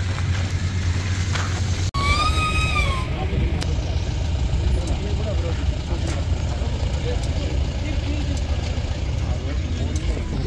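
Outdoor background noise: a steady low rumble with indistinct voices of a group talking in the background. Just after a brief dropout about two seconds in, a single whistle-like tone rises and falls over about a second.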